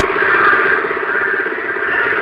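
Ford 6610 tractor's four-cylinder diesel engine running, heard from the driver's seat with a fast, even pulsing.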